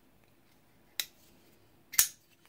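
Two sharp clicks about a second apart from a Rough Ryder liner-lock flipper knife as its blade is flipped and snaps into place.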